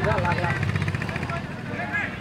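Several people's voices talking and calling out over one another, over a steady low rumble.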